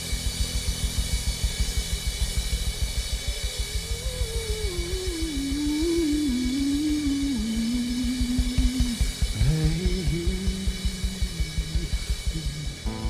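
A live band playing an instrumental passage: drum kit with a fast, steady kick-drum pulse and cymbals, under electric bass and guitar. From about four seconds in, a single melodic line wavers and slides down in pitch, and a lower line takes over near the end.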